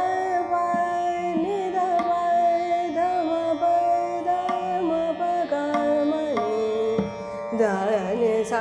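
A female Hindustani classical vocalist singing Raag Ramkeli: long held notes with small ornaments over a steady drone, with tabla accompaniment. The line steps down in pitch about six and a half seconds in, eases off briefly for a breath, and a new phrase starts near the end.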